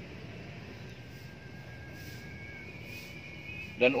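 Quiet outdoor background noise with a faint, thin, steady high tone about a second in and a slightly higher one joining about two seconds in. A man's voice starts right at the end.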